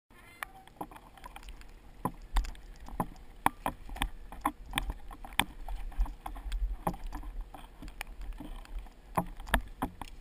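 Mountain bike rattling over a rough forest trail: irregular sharp knocks and clatters, several a second, over a low rumble of wind and jolts on the bike-mounted camera's microphone.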